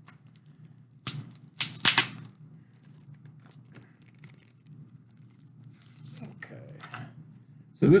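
Sealed packaging being torn open: a short rip about a second in and a longer one just before two seconds, then faint rustling as a bagged comic book is handled.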